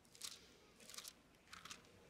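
Near silence with three faint, brief rustles of paper, about two-thirds of a second apart: Bible pages being turned to look up a passage.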